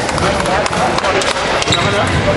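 Voices talking in the background of a basketball gym, with a basketball bouncing on the court floor as a series of short thuds.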